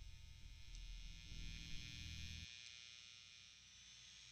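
Faint low electrical hum that cuts off suddenly about two and a half seconds in, with a faint hiss growing beneath it toward the end.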